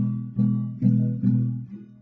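Acoustic guitar chords strummed in a steady rhythm, a little over two strums a second, fading toward the end. The strumming is done with a padded adaptive pick, a noodle stirrer covered in a fuzzy sock, which is meant to give a softer sound.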